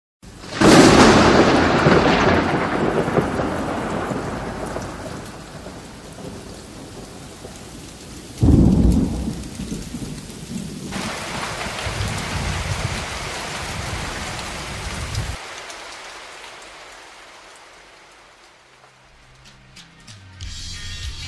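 Thunderstorm: a loud thunderclap about half a second in that rumbles away over several seconds, a second clap at about eight seconds, and steady rain that fades out near the end.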